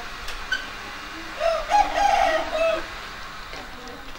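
A rooster crowing once, a single call of about a second and a half near the middle, over faint outdoor background noise.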